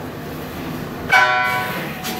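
A single bell-like metallic note struck about a second in and left ringing, its many overtones fading over about a second, after a quieter stretch of soft playing.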